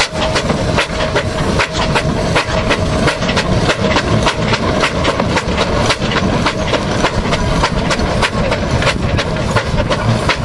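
Steam traction engine working under load, hauling a trailer of logs: its exhaust chuffs in quick, even beats, about four a second, over a steady hiss of steam.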